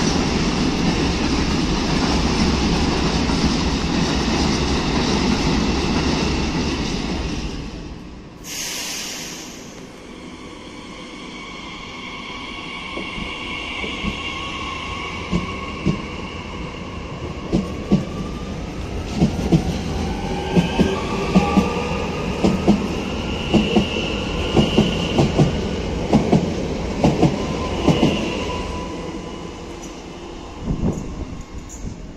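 A freight train of hopper wagons rumbling past for about the first eight seconds. Then a Francilien electric multiple unit on the move, its traction motors whining and rising in pitch, with a run of sharp clicks from its wheels passing over rail joints.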